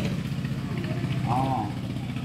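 An engine running steadily at idle, a low even hum, with one short rising-and-falling voice sound about one and a half seconds in.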